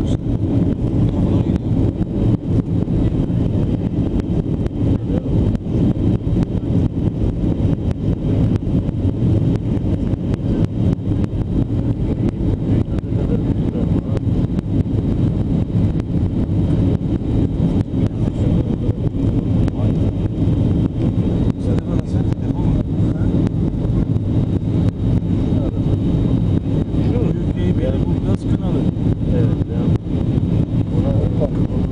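Steady loud drone of an airliner's engines and airflow heard inside the passenger cabin on descent, deep and even, with a faint steady high tone above it.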